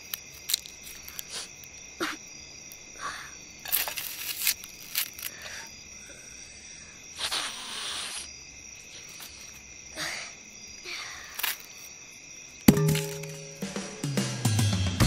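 A boy sniffling and sobbing quietly, with a few small clicks and knocks, over a steady high-pitched background drone. Music comes in loudly near the end.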